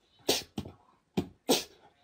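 A corgi giving short, sharp barks, about four in quick succession.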